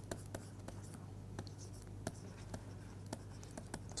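Pen strokes on a writing tablet as a word is handwritten: faint scratches and small taps, with a low steady hum beneath.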